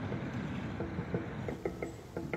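Soft background music: a low, hazy drone with a few short plucked notes in the second half.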